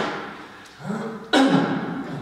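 A baseball cap slaps down onto a wooden floor. About a second and a half later comes a louder thump and scuff of a sneaker on the floor as the cap is flipped back up off the floor.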